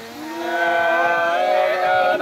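Unaccompanied Nùng sli folk singing begins about a third of a second in: a voice holding long, slowly gliding notes that swell in loudness.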